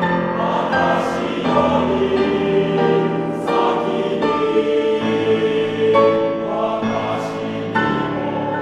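Male-voice choir singing in full held chords, the chords changing every second or two, with an occasional sung consonant hiss.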